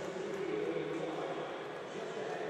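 Stadium crowd noise: a steady murmur from the stands with faint voices in it.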